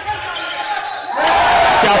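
Live basketball game sound in a gym: ball and court noise. About a second in it turns suddenly much louder and denser, and commentary comes in near the end.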